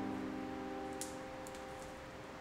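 Background music: a held chord slowly fading, with a couple of faint clicks midway.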